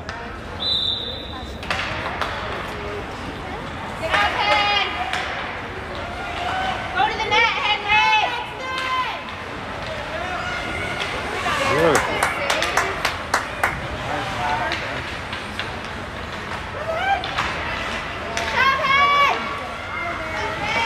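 Youth ice hockey in a rink: a short, steady referee's whistle near the start, then bursts of shouting and calling out, with sharp clacks of sticks and puck on the ice in the second half.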